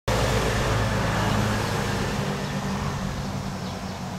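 Railway noise: a train's low, steady engine hum and running noise, fading slightly as the train draws away.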